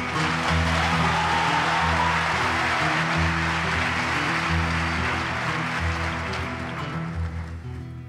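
Audience applauding over a classical guitar that plays a repeating pattern of low bass notes. The applause comes in at the start and dies away near the end, leaving the guitar.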